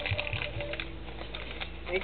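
Light clicking and scratching of fingernails picking at taped gift wrapping, with faint music in the background.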